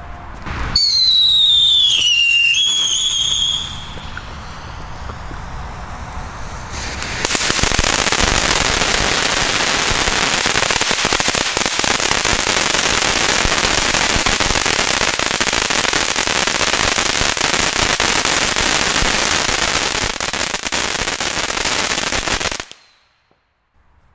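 Silver crackling fountain burning with a loud, dense hiss and crackle for about fifteen seconds, then stopping abruptly near the end. Before it catches, a whistling tone falls in pitch over a couple of seconds, followed by a quieter hiss.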